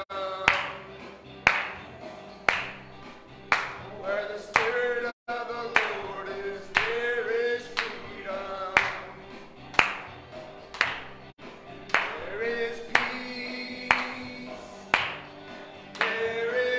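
Live worship song in church: a voice carries the melody with others singing along, over a sharp clap-like beat about once a second. The sound cuts out for an instant twice, near the middle.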